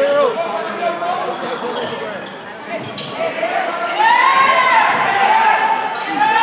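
Basketball game in a gymnasium: sneakers squeaking on the hardwood court, the ball bouncing and voices shouting, all echoing in the hall. The voices are loudest from about four seconds in.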